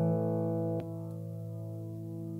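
A sustained electric-guitar chord from a Gibson SG Junior ringing through a Leslie rotating-speaker cabinet while its speed is being changed. A single click comes a little under a second in, after which the chord rings on more quietly.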